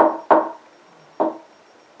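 Three single instrument notes, each struck or plucked sharply and ringing briefly before fading: one at the start, a second a moment later, and a third about a second in.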